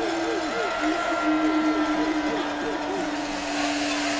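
Stadium crowd noise between plays of a football game, with wavering voice-like calls and a steady held tone that starts about a second in.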